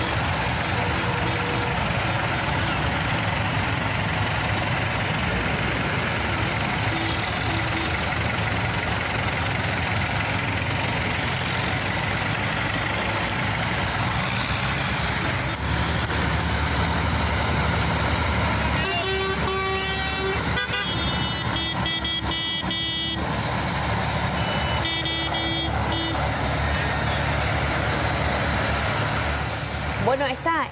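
Tractor and truck engines running in a road blockade, a steady rumble throughout. About two-thirds of the way in, horns sound for several seconds, then again briefly a little later: protest honking.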